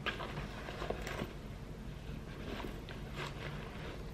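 Faint rustling and a few soft knocks of a felt purse organizer insert and a faux-leather tote being handled, over a low steady room hum.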